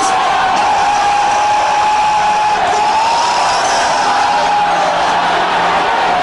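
A congregation praying and crying out aloud all at once, a dense wash of many voices. Beneath it runs one long held note that slowly wavers in pitch.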